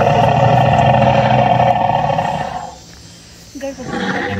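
Recorded big-cat roar played through an outdoor loudspeaker; one long roar that cuts off almost three seconds in.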